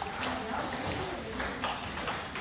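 Table tennis ball clicking off the bats and the table during a serve and the start of a rally: a series of sharp, separate ticks, several close together near the end.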